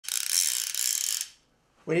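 Click-and-pawl ratchet check of an old trout fly reel buzzing as the drum spins, for a little over a second, then stopping suddenly.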